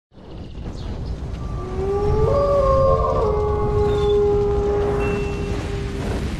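A wolf howl sound effect: a long howl that rises in pitch and then holds steady, over a continuous low rumble.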